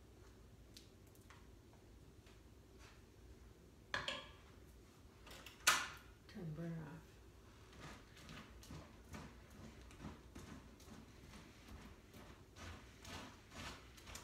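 Faint scraping and light clicking of a wooden spoon stirring a thick, sticky mixture of molasses syrup, peanuts and Cheerios in a bowl, with two sharper knocks or scrapes about four and six seconds in.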